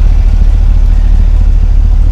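The 2016 GMC Yukon Denali's 6.2-litre V8 idling, a steady low rumble.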